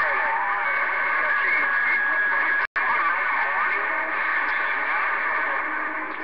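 Galaxy CB radio receiving a busy long-distance skip channel: several distant voices talking over one another through steady hiss and static, with a few steady whistling tones. The audio cuts out for an instant about halfway through.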